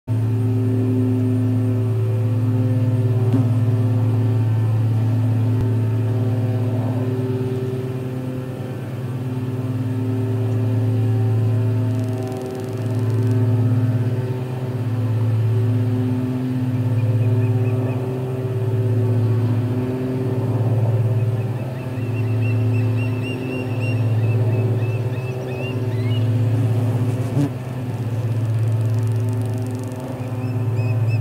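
A loud, steady low mechanical hum with a few pitched overtones, swelling and fading in a slow regular beat from about twelve seconds in. Over it, from about seventeen seconds on, come faint series of high chirps from a perched osprey.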